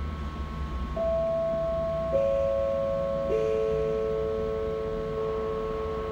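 Three steady electronic tones come in one after another, about a second apart and each a step lower, and are held together as a chord over a low hum.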